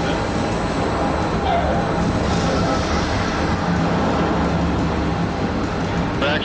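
Steady low rumble from a space shuttle simulator under test, as its hydraulic motion platform tilts and rocks the cabin.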